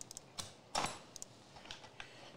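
A scatter of light clicks and taps, with a short rustle about three-quarters of a second in: small tools being handled on a workbench.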